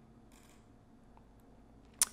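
Near silence: room tone with one faint mouse click about half a second in.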